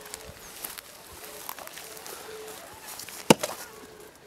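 A single sharp knock a little after three seconds in, over a quiet outdoor background.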